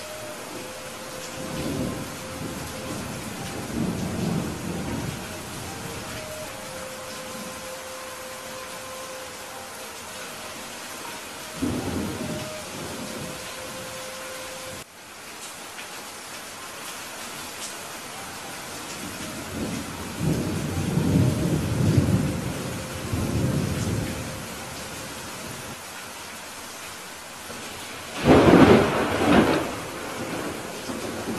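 Steady rain in a thunderstorm, with repeated rolls of thunder: several low rumbles through the middle and the loudest, sharpest thunderclap near the end.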